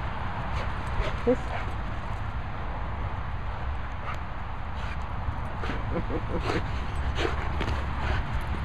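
Two dogs playing tug with a rope toy on grass: irregular thuds and scuffles of their paws on the ground as they pull and dodge, coming more often in the second half.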